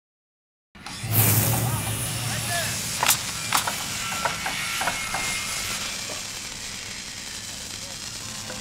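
Sound effects starting just under a second in: a whoosh over a low hum, then two sharp clicks and a run of lighter mechanical ticks, fading toward the end.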